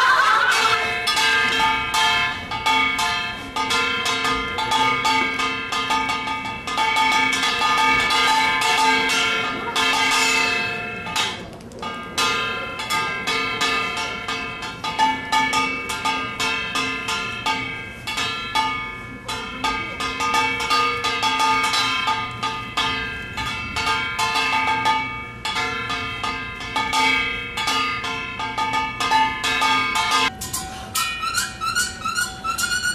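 Small Korean brass hand gong (kkwaenggwari) beaten with a stick in a fast, continuous rhythm, its metallic ringing held between strokes. The playing breaks off briefly just before twelve seconds in, then goes on.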